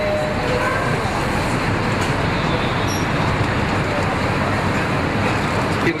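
Steady city street traffic noise heard from the open top deck of a moving double-decker tour bus.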